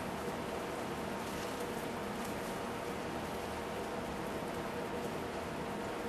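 Fine iron powder poured from a container into a pan of hot water, a faint patter over a steady hiss and low hum.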